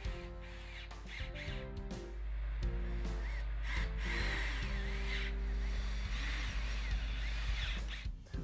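Cordless drill driving pocket-hole screws into pressure-treated pine through a long driver bit, its motor running steadily and louder from about two seconds in. Background music plays underneath.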